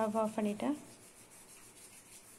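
Spatula stirring puffed rice in a metal kadai: a soft, dry scraping and rustling that goes on after a brief stretch of a woman's voice at the start.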